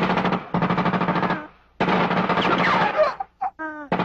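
Two bursts of rapid automatic gunfire from a film soundtrack, each a little over a second long, with a short pause between them. A falling whine runs through the second burst.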